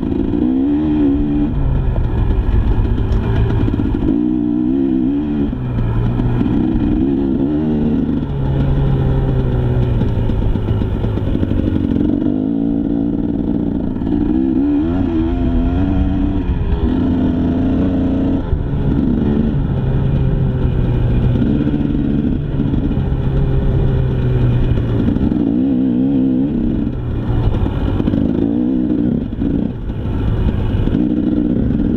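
KTM EXC 300 two-stroke single-cylinder dirt bike engine under load while ridden, its pitch rising and falling over and over as the throttle is opened and closed.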